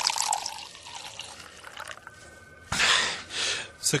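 Liquid poured into a glass, a measured drink, with a trickling hiss for the first couple of seconds. Near the end comes a louder rush of noise lasting about a second.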